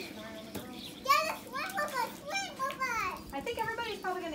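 Young children's high-pitched voices chattering and calling out in play, the pitch sliding up and down, busiest from about a second in.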